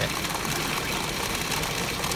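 Steady din of a pachinko parlor: a dense, continuous rattle of steel pachinko balls and machine noise.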